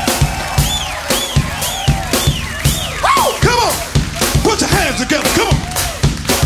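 Live funk band playing with a steady drum beat and rising-and-falling lines over it; the bass guitar has been taken out of the mix.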